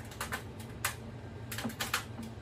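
About five light, irregular clicks and taps from hands and a tool working at the plastic cover of an air conditioner's drain-up kit, over a steady low hum.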